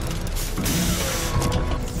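Film sound effects of a giant armoured robot suit's mechanisms working, with a burst of hiss about half a second in.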